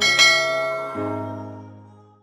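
Outro music sting ending on a struck, bell-like chime that rings and slowly decays. About a second in, a lower sustained chord joins, and the sound fades away.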